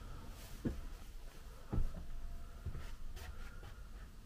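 Three soft, low thumps about a second apart, footsteps on the floor of a van under conversion. Faint light clicks and rustles come in the second half.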